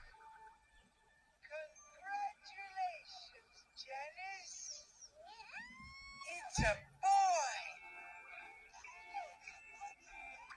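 Slowed-down cartoon voices, dragged out into long sliding vowels, over soft background music, with a short sharp thump about two-thirds of the way through.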